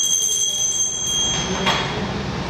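A small handbell rung once, its clear high ring fading away over about a second and a half, marking the formal opening of the council session.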